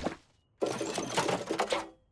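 Cartoon sound effect of toy train carriages being pulled out of a toy box: a rapid rattling clatter lasting just over a second, starting about half a second in.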